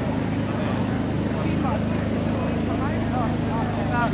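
An engine running steadily at a constant speed, with a low even hum, under the chatter of a crowd talking.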